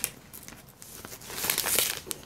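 Paper and plastic rustling and crinkling as craft paper is handled and pulled out, faint at first and louder from about a second in.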